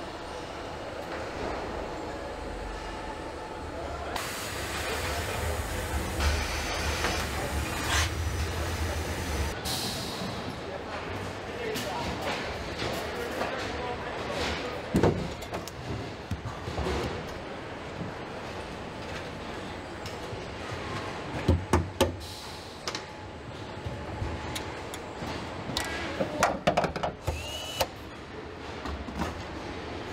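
Car assembly-line noise: a low machinery hum with a hiss over the first ten seconds, then scattered clicks and knocks of tools and parts being fitted, a few sharp ones around the middle and near the end.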